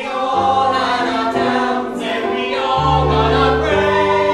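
A musical-theatre cast of men's and women's voices singing together in harmony, with deep sustained notes coming in underneath about three seconds in.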